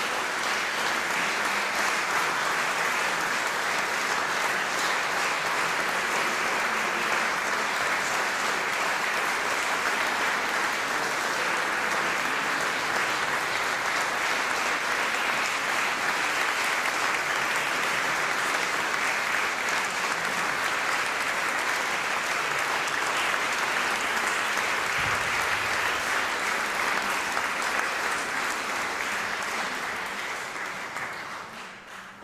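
Audience applauding steadily, a long, even round of clapping.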